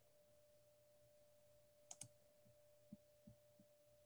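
Near silence on a video-call line: a faint steady hum, with a couple of faint clicks about halfway through.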